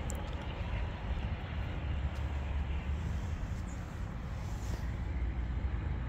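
Steady low rumble of background noise with no clear tone, wavering slightly in level, and a few faint clicks.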